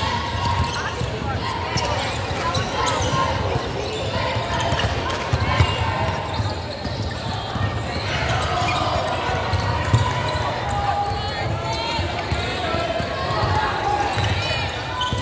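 A basketball being dribbled on a hardwood court, its bounces repeating as low thuds, under a steady hubbub of players' and spectators' voices echoing in a large gym.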